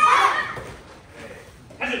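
A class of children shouting a kiai together as they throw a kick on the count; the loud shout fades slowly in the reverberant hall. A man says "okay" near the end.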